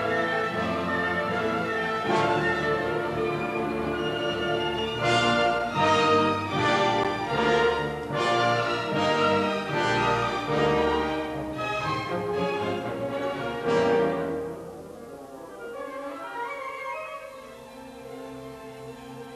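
A youth symphony orchestra plays a classical overture. Strings and brass sustain full chords, then hit a run of repeated accented chords a little under a second apart. About fourteen seconds in, the music drops to a softer passage with the woodwinds.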